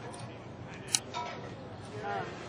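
A single sharp click about a second in, the loudest thing here, over a background of faint voices.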